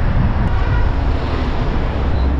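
Steady road noise of a moving Toyota Corolla: a deep engine and tyre rumble with wind noise over it.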